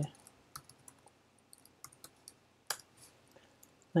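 Computer keyboard keystrokes: a few sparse, light key clicks as a short command is typed, with one sharper click nearly three seconds in.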